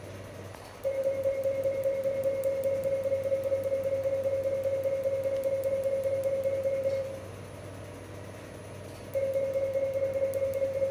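Laser tattoo-removal machine sounding its steady firing beep while the handpiece pulses on the skin, with faint quick ticks over it; the beep runs for about six seconds, stops for about two, then starts again near the end.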